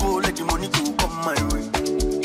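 DJ set music played loud over a sound system: a dance track with a steady kick-drum beat, held chords and a melodic line.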